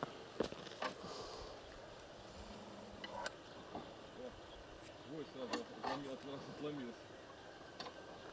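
Faint, distant men's voices talking, with a few scattered sharp clicks and knocks.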